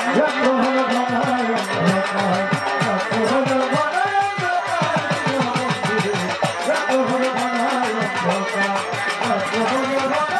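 Red electric violin bowed in a melodic instrumental passage of a Bengali Baul folk song, over a rhythmic drum accompaniment. The drumming quickens into a fast run of strokes in the middle.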